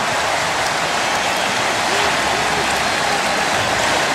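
Stadium crowd cheering a touchdown, a steady, even wash of noise from thousands of voices.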